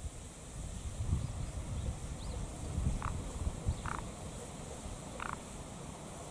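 Wind buffeting the microphone in uneven gusts, with three short calls from a small animal in the second half.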